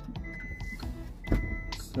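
Kia Sedona's power liftgate warning beeping twice, two steady high beeps about half a second each, as the rear liftgate is triggered to open, with a short knock just before the second beep.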